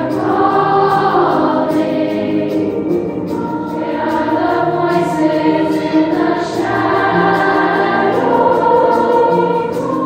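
Children's and youth choir singing in parts, holding long notes in harmony that change every second or two.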